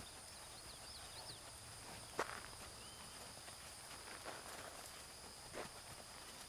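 A horse walking on a sand arena, faint and irregular: soft hoof and tack sounds, with one clearer knock about two seconds in. Birds chirp faintly early on over a steady high insect whine.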